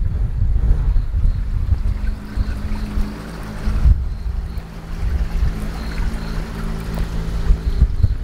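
Wind buffeting the microphone, with background music playing long held notes from about two seconds in.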